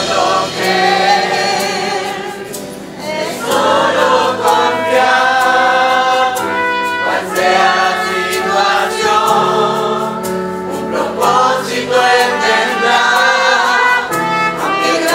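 Church choir singing a hymn, many voices together, with instruments accompanying.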